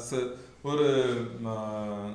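A man's voice in a chant-like, sing-song delivery: a short syllable, a brief pause, then a long vowel drawn out on a level pitch through the second half.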